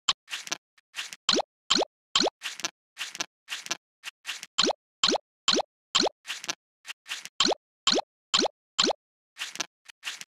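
Cartoon plop sound effects repeating in quick succession, about two or three a second. Each is a short pop whose pitch drops quickly, like puzzle pieces popping into place.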